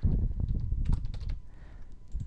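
Typing on a computer keyboard: a quick run of keystrokes over the first second and a half, with dull thuds near the start.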